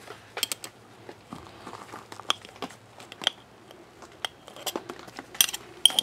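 Metal spoon scraping and clinking against a glass jar as morel spawn is dug out: irregular light clicks and taps, a few with a short ring, loudest near the end.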